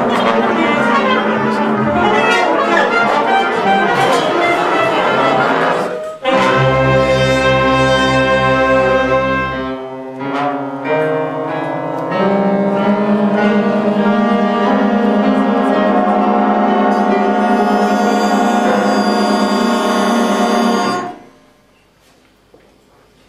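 Jazz big band playing live, trumpets, trombones and saxophones with the rhythm section: a busy full-ensemble passage, then long held brass chords over a deep bass note. The band stops abruptly near the end.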